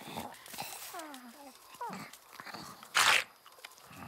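Wordless cartoon character vocal sounds: a few short falling-pitch calls and grunts, then a loud, short hissing burst about three seconds in.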